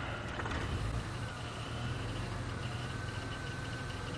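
Open safari game-drive vehicle's engine running as it drives slowly along a dirt track: a steady low rumble with a thin whine over it that wavers slightly in pitch.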